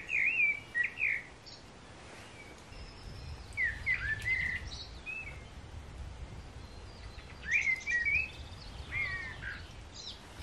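A songbird singing in three short phrases of clear whistled, gliding notes a few seconds apart, with fainter high twittering between them.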